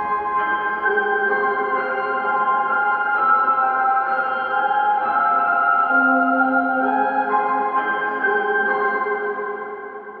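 A piano sample loop, reversed and chopped with reverb added, playing back at a new tempo: overlapping sustained notes that start abruptly and fade out near the end.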